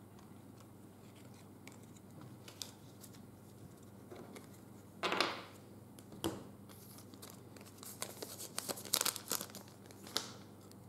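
Foil wrapper of a Panini Prizm trading-card pack being torn open and crinkled: a dense run of crackling rustles near the end, after a few soft handling sounds and a brief swish about halfway.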